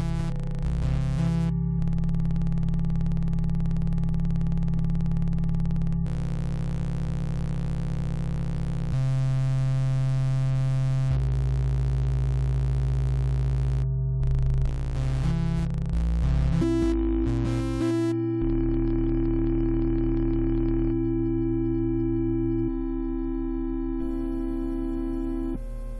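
Software modular synthesizer oscillator (XSRDO Doppler Modular System's M152 VCO) droning on one steady low note, its waveform switching abruptly every few seconds as its outputs are repatched. It is bright and buzzy at first, then turns smoother and purer about two-thirds of the way through.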